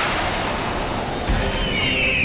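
Dramatic TV sound effects: a steady rushing noise with a low thump about a second in, then a wavering high tone that slowly falls.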